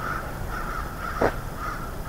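A bird calling in short, evenly repeated notes, about two a second, with one brief click a little past the middle.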